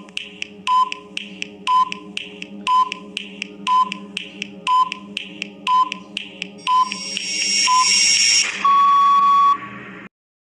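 Countdown timer sound effect: a tick with a short beep once a second over a steady low hum, nine in all, then a rising hiss and a long buzzer tone near the end as time runs out.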